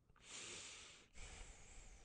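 A man's faint breath close to the microphone: one breath out lasting most of a second, then a second, softer breath.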